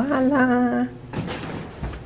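A woman's long, drawn-out "wow" in one held, slightly rising note, followed by a few light knocks and rustling.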